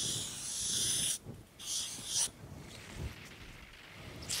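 Felt-tip marker drawing on flipchart paper in two dry, scratchy strokes: the first about a second long, the second shorter, about two seconds in.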